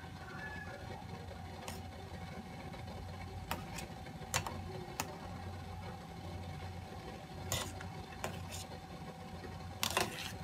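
Steady low hum of a portable butane gas stove's burner under a pot of boiling water, with a few light clicks scattered through it.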